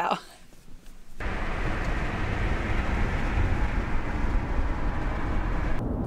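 Steady road and engine noise inside a moving car's cabin, starting suddenly about a second in.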